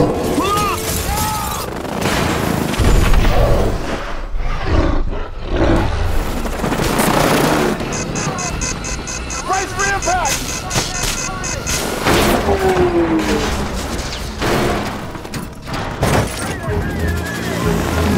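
Action-film battle sound mix: a music score under repeated heavy booms and crashes, with men shouting and helicopter noise.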